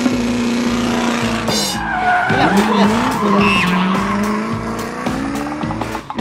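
Race-car sound effect for a toy remote-control car driving off: an engine revving up and down, with tires squealing.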